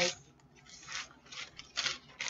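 Cloth apron being handled and untied right at the microphone: a few short rustles of fabric rubbing.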